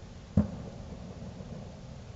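A single sharp distant bang about half a second in, with a short fading rumble after it, over a steady low background rumble. It is one of the scattered reports of New Year's midnight celebrations.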